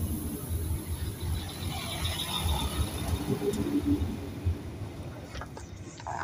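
Alstom Coradia Lint diesel railcar moving along the platform, its low engine and running-gear rumble steady, then easing off after about five seconds. A few sharp clicks come near the end.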